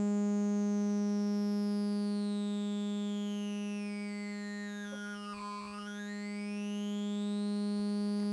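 Sawtooth wave at a steady low pitch run through the BMC105 12-stage JFET phaser with its resonance turned up. The phaser's resonant peaks glide down through the tone for about five and a half seconds, then sweep back up, and the level dips at the bottom of the sweep.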